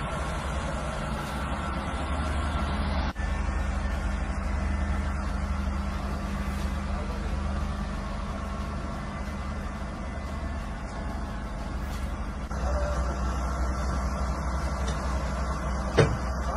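Steady low hum of an engine running, with a brief break about three seconds in and a slight rise in level about twelve and a half seconds in.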